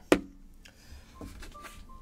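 A single sharp knock as a plastic slime tub is set down on a tabletop, followed by a few faint short high tones.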